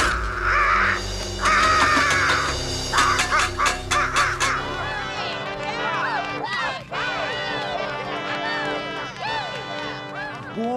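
Cartoon film soundtrack: a buzzard's harsh cawing cries over orchestral music, with a few sharp clicks, in the first half; then many gliding, rising-and-falling cries over the music in the second half.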